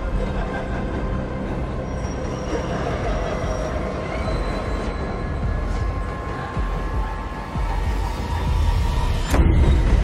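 Subway train running: a steady low rumble with thin whining tones over it, under tense music, with one sharp clack near the end.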